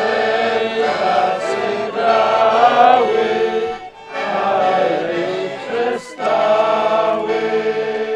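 Several voices singing a slow, drawn-out chant together over sustained accordion chords, a mock funeral lament for the double bass. The phrases break off briefly about four seconds in and again about six seconds in.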